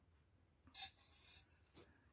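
Faint rustling and scraping of hands handling a large pot wrapped in aluminium foil tape, with a short light click near the end.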